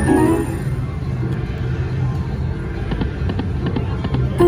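Piggy Bankin slot machine: a bright electronic win melody ends about half a second in. A spin follows with a scatter of short clicks over a steady low hum.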